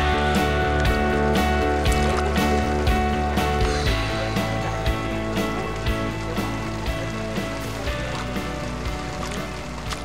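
Background music: sustained chords over a steady beat, shifting to a new chord about four seconds in and gradually getting quieter.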